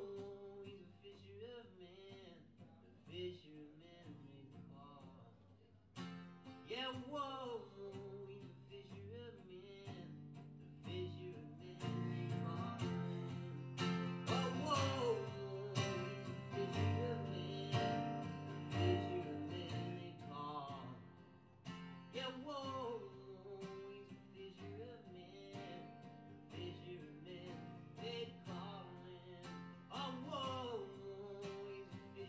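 Live acoustic folk music from two acoustic guitars, plucked and strummed, with a melody line that glides between notes. It starts quietly, grows louder about twelve seconds in, and eases off again after about twenty seconds.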